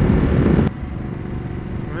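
Wind buffeting a helmet microphone over the Ducati Multistrada 1200's V-twin engine while riding. Less than a second in, the loud rushing drops abruptly to a quieter, steady engine and road rumble.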